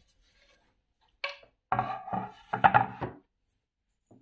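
Wooden cutting board handled on a hard surface: a short knock about a second in, then a run of irregular knocks and scrapes of wood that stops a little before the end.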